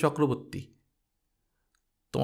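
Speech only: a man's reading voice finishes a phrase under a second in, then cuts to dead silence.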